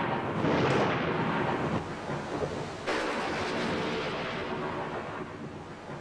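Thunderstorm: long rumbling thunder, with a fresh rumble about three seconds in that slowly fades.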